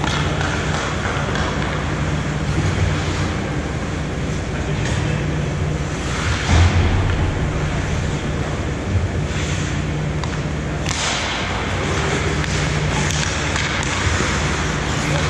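Ice hockey play heard from rinkside: skate blades scraping the ice and sticks and puck clattering over a steady low hum. A dull thump comes about six and a half seconds in, and a sharper noise a little before eleven seconds.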